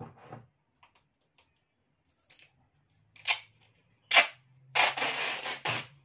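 Clear packing tape being peeled off its roll: a few short rips as the end is freed, then one longer pull of tape near the end.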